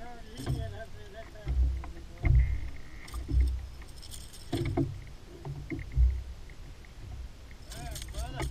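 Dull thumps of movement on a bass boat's deck, picked up through the boat-mounted camera, with a few sharp clicks and a jangling rattle of handled gear while a caught bass is dealt with. Five or so heavy thumps come at irregular intervals.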